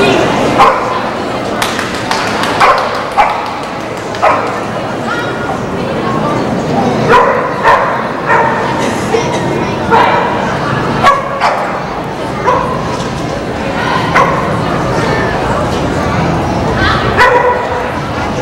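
Bearded collie barking again and again while running an agility course: short, sharp barks at uneven spacing, sometimes about a second apart.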